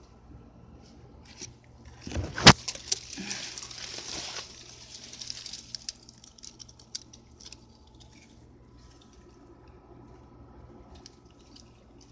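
Rustling and crackling with one sharp click about two and a half seconds in. The crackle is loudest for about two seconds, then thins to scattered faint clicks.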